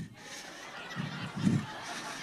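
Soft laughter from a congregation in a large hall, swelling briefly twice about a second in.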